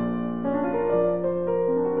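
Background piano music: slow, sustained notes.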